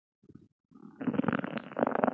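Human stomach growling and gurgling in a belly bloated after eating Mentos: a few small gurgles, then from about a second in a long, loud rumbling gurgle that swells twice.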